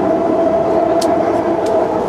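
BART train car running at speed, heard from inside: a steady rolling rumble with a held whine over it, and a couple of sharp clicks, the first about halfway through.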